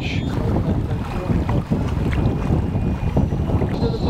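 Wind buffeting the microphone on an open boat, a steady low rumble.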